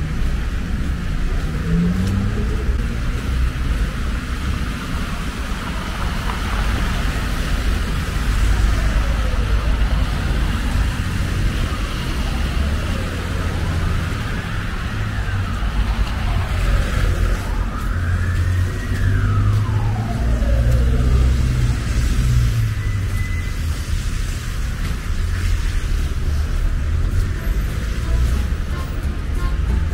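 Street traffic: a steady rumble of cars passing. In the middle a faint tone glides up and down several times.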